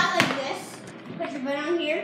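Children's voices talking, with a short sharp knock just after the start.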